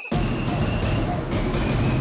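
Electronic outro music with a glitch effect: a sudden loud burst of noise with deep bass starts just after the beginning and holds, with a thin high tone running through it.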